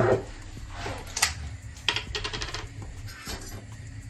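Light clicks and clinks from handling a small glass jar of garlic paste and its lid: single clicks a little after a second in and just before two seconds, then a quick run of about six clicks.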